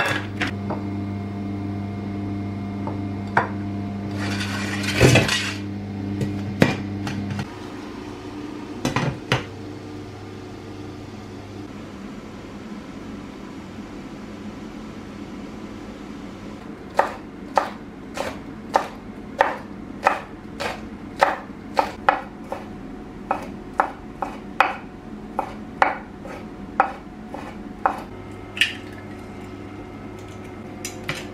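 Kitchen knife slicing sausages on a wooden cutting board: a steady run of about twenty sharp cuts, roughly one and a half a second, through the second half. Before that a steady electric hum cuts off suddenly about seven seconds in, with a rustle and a few knocks.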